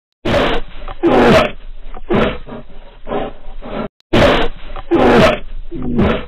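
A recorded animal roar used as an intro sound effect: a run of four loud roars about a second apart that cuts off abruptly a little before four seconds in, then the same recording starts over.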